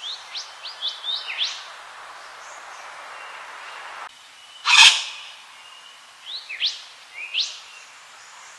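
A wattlebird calling: a run of quick, sharply rising whistled notes, a loud harsh burst about five seconds in, then another run of rising notes near the end.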